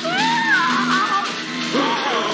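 A cartoon character's shrill scream that rises and then falls over about a second, with a second, lower-starting scream rising near the end, over orchestral film music.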